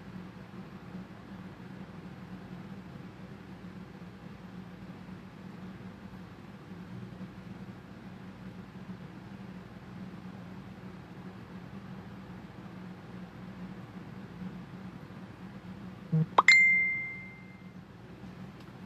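Faint steady room hum. Near the end a small tap, then a single bright ding that rings out for about a second and a half.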